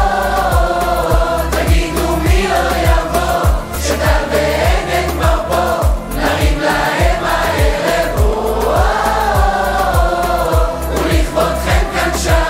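Upbeat Hebrew pop song sung by a group of voices together, over a steady drum beat.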